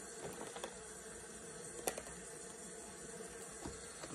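Quiet room tone with a few faint, light clicks and taps of small objects being handled, the sharpest a single click about two seconds in.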